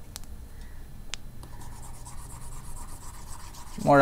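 Faint scratchy rubbing of a stylus across a tablet screen as handwritten working is erased, with two light clicks about a second apart near the start.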